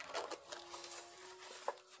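Faint handling noise as a baked polvilho biscuit is lifted out of an aluminium baking pan, with one short sharp tap near the end.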